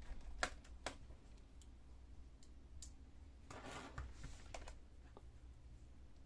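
Light clicks and taps of hands and a small screwdriver handling a laptop's plastic bottom case, with two sharper clicks in the first second and a brief scrape near the middle.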